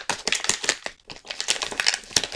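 Glossy gift wrapping paper crinkling and crackling as a present is pulled open by hand: a quick run of sharp crackles with a brief lull about a second in.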